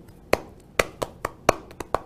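A man clapping his hands in a steady beat, about four sharp claps a second from about a third of a second in, a rhythm clapped out to show how a child starts to dance.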